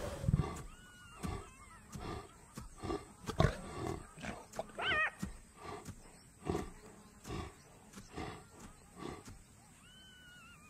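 Lioness growling in short, low, breathy pulses, roughly one a second, with a few louder ones.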